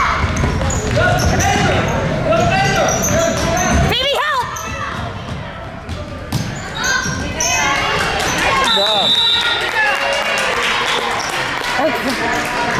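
A basketball bouncing on a hardwood gym court during play, with players and spectators calling out in an echoing gym.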